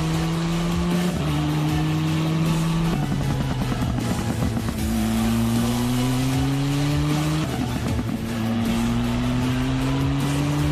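Open-wheel junior formula race car accelerating through the gears. The engine note climbs, then drops at each of three upshifts, with music underneath.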